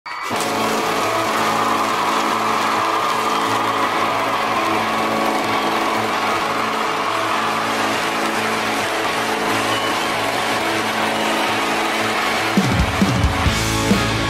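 Rock band music: a held chord rings steadily, then drums and bass come in with heavy repeated hits about a second before the end.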